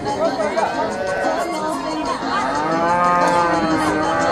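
Livestock calling: several drawn-out animal calls that rise and fall in pitch, the longest and loudest near the end.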